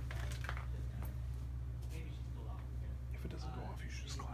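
Faint whispering over a steady low electrical hum, with a few sharp clicks in the first second.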